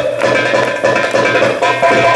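Darbuka (Arabic goblet drum) played live in an improvised drum solo: a dense, fast stream of strokes and rolls.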